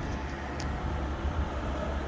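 Steady low background rumble, with one faint short click about half a second in.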